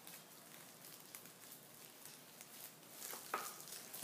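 Faint crinkling and small clicks of thin plastic gloves and a kitchen knife working into a raw sardine on a plastic tablecloth, with one brief louder sound near the end.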